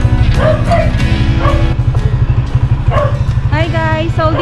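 Background music with a steady low beat, with a few short bark-like calls over it and a wavering vocal line near the end.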